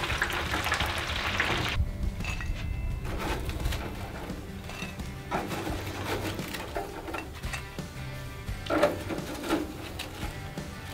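Shoestring fries sizzling hard in the hot oil of an electric deep fryer for a little under two seconds. After a sudden cut, quiet background music plays, with a few short metal clinks of the fryer basket.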